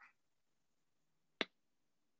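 A quiet pause with a single short, sharp click about one and a half seconds in.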